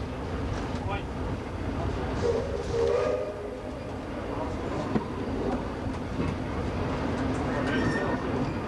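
Train running slowly along jointed track, heard from the front of the train: a steady low rumble with a few sharp clicks of the wheels over rail joints. A short pitched sound comes in about two seconds in and lasts about a second.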